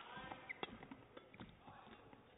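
Badminton rally: a sharp racket hit on the shuttlecock right at the start and another sharp crack about half a second later, among faint shoe squeaks and footfalls on the court mat.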